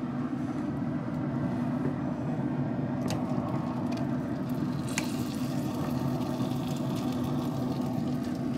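Traeger pellet grill running with a steady mechanical hum from its fan. Metal tongs click sharply against the grill grate twice, about three and five seconds in, as the ribs are lifted off.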